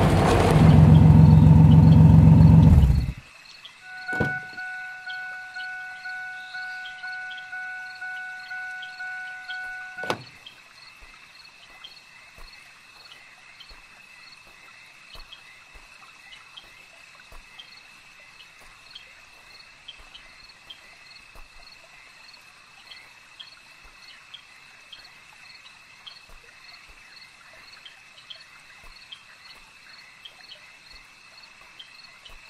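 A loud low rumble that cuts off about three seconds in, then a car's two-tone door-open warning chime pulsing about twice a second for some six seconds, stopped by a single knock of the door shutting. After that, crickets chirp steadily, with faint footfalls on gravel.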